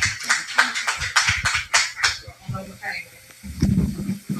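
Indistinct voices and room noise from a meeting recording, fading to a brief lull late on.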